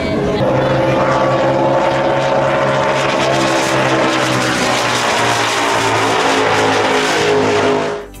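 Racing powerboat engines running at speed on a high-speed pass. A loud, steady engine note made of several tones sags slowly in pitch over several seconds, then cuts off abruptly near the end.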